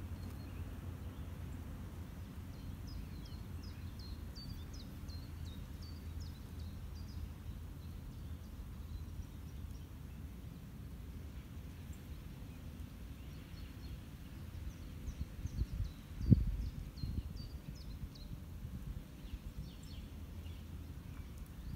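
Outdoor park ambience: a steady low rumble with a small bird singing two runs of quick, high chirps, each lasting a few seconds. A brief low bump on the microphone about sixteen seconds in is the loudest moment.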